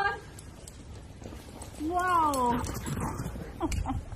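A whippet's drawn-out whining call that rises and falls in pitch: a short one at the start and a longer one about two seconds in.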